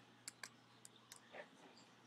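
A handful of faint, sharp clicks from a computer keyboard and mouse as an email address is entered and the pointer moves to a button.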